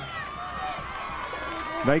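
Indistinct voices of players, coaches and spectators talking in the background of an outdoor football field, steady and fairly faint, with a man's voice starting close to the microphone right at the end.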